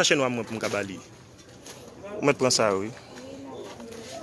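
A person's voice making two drawn-out wordless vocal sounds about two seconds apart, with a quieter stretch between.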